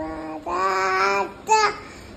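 A toddler singing a few long held notes, the last one short and higher.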